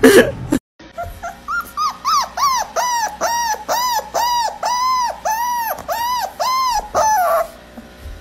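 Chihuahua puppy whining in a rapid run of short, high cries, each rising and falling in pitch, about three a second at first and slowing a little. The run stops shortly before the end.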